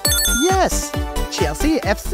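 Reveal sound effect over music: a brief bright chime ringing at the start, then a few swooping sounds that each rise and fall in pitch.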